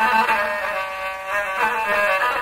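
Rababa, a bowed folk fiddle, playing a flowing Middle Eastern melody, the notes changing every fraction of a second over a steady low drone.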